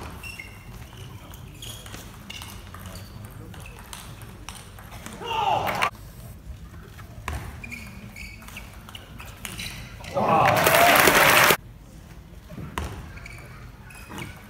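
Table tennis rallies: a plastic ball clicking off the bats and the table in short, quick strokes. There is a short shout about five seconds in, and a loud burst of crowd cheering and applause lasting over a second about ten seconds in as a point is won.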